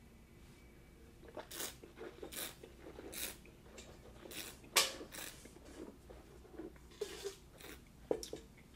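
Wine being sipped and slurped in the mouth at a tasting: a series of short sucking slurps as air is drawn through the wine, the loudest a little past halfway.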